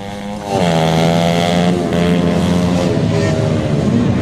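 Dirt bike engine running, its pitch dropping about half a second in and then holding steady.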